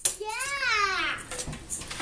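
A young child's drawn-out vocal sound, one call about a second long that rises then falls in pitch.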